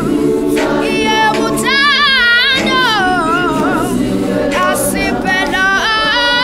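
Youth gospel choir singing a cappella. A high voice sings wavering, bending runs over the choir's sustained lower chords.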